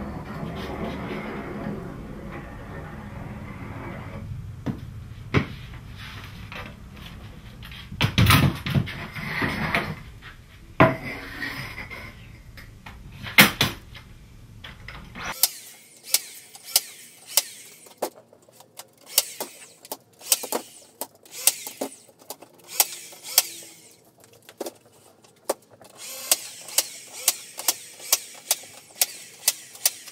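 Nail gun firing a run of brads through flexible bender board into the edge of a round plywood top: sharp clacks, one shot at a time, coming at about two a second near the end. Before that, a low steady hum and a few knocks as the wood strip is handled.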